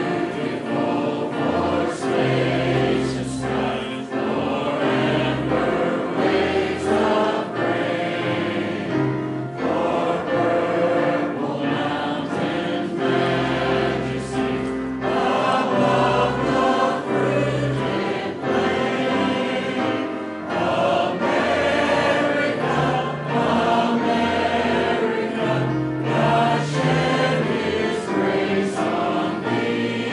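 Church congregation singing a hymn together, many voices at once.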